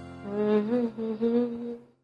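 Soft background music with a voice humming a short melody over it, fading out near the end.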